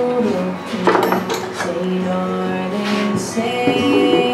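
A bluegrass song playing, a singer with guitar backing, with held notes throughout. A few short clinks sound over it, around a second in and again near three seconds.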